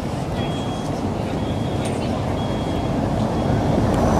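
Street traffic noise: a low, steady rumble that grows louder toward the end as a vehicle approaches.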